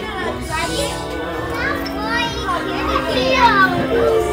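Many children talking and calling out at once in a classroom, a steady mix of overlapping young voices.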